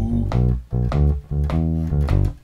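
Electric bass guitar playing a loping shuffle bass line in G. The notes are plucked about three a second, walking through the chord's arpeggio (root, third, fifth and sixth), with short breaks between them.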